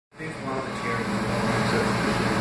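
Steady hum of an Epson C3 six-axis robot arm's servo motors as the arm, in low-power mode, moves its gripper down with a Connect 4 checker, with faint voices underneath.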